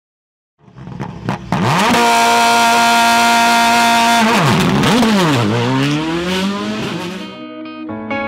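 Racing car engine revving. It climbs steeply and holds high revs for about two seconds, then drops and climbs again as if through gear changes. Guitar music comes in near the end.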